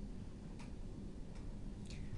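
Low, steady room hum with three faint, soft ticks spaced unevenly across two seconds.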